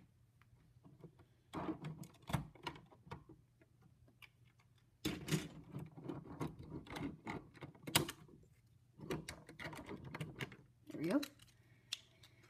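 Lego bricks being pried apart and handled: runs of small plastic clicks and rattles, a short spell about two seconds in and a longer, busier one from about five seconds to ten.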